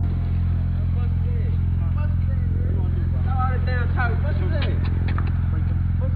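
A steady low hum runs throughout. From about a second in, indistinct voices talk over it, sounding thin and muffled.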